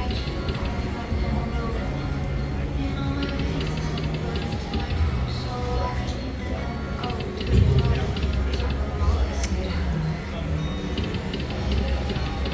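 Poker machine game music and reel-spin sounds, with short melodic jingles repeating as the reels spin and stop on spin after spin. A louder low swell comes about seven and a half seconds in.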